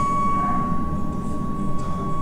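A single steady high ringing tone held over a low drone in the film's soundtrack.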